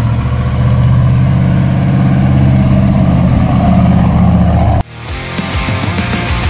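A GMC mud truck's 454 big-block V8, bored 60 over with a Comp cam and fuel injection, running steadily with a deep note. About five seconds in it cuts off abruptly and loud heavy rock music takes over.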